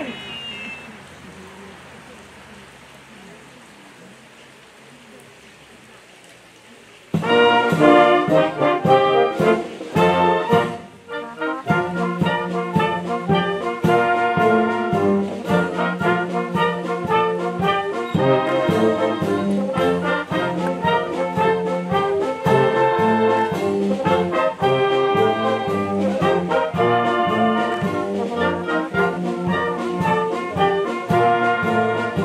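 After several seconds of low background, a youth wind band of brass, saxophones, clarinets and flutes starts playing a march about seven seconds in. It plays loudly with a steady beat, dipping briefly a few seconds after the start.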